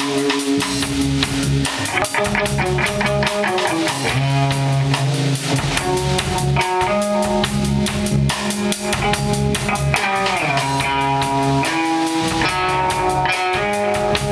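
A live band playing an instrumental passage on guitars and a drum kit, with steady drum hits under sustained guitar notes; a guitar note slides down in pitch about ten seconds in.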